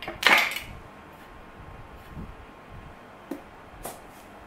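A spoon clattering against a glass jar, one short clink and scrape about a quarter second in, followed by a couple of light clicks near the end.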